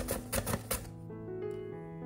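A carrot being grated on a plastic julienne grater: quick scraping strokes, about six a second, that stop just under a second in. Background music with held notes plays throughout.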